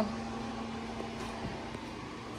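Room tone: a steady low hum under faint background noise, with a soft knock about a second and a half in.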